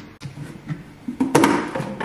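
Lid of a paint tub being prised open: a few small knocks, then a louder sharp pop about a second and a half in as the lid comes free.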